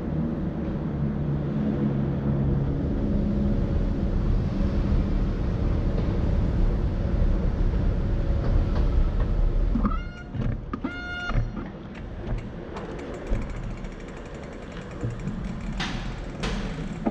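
Escalator machinery running with a steady low rumble for about ten seconds, then dropping away as the bicycle reaches the bottom. After that come a few short, high squeals and scattered clicks and creaks as the bicycle rolls off onto the floor.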